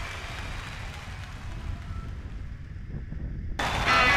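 Low rumble of wind buffeting the camera microphone on a moving motorcycle, then music with guitar cuts in suddenly just before the end.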